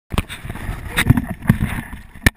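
Handheld action camera being moved about, giving a low rumble of handling noise with several sharp knocks against its housing.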